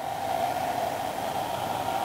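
A steady, even hiss of background noise with no breaks or changes.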